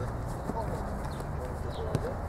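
Outdoor pitch-side ambience: a steady low rumble with faint, distant voices of players. A single sharp knock comes near the end.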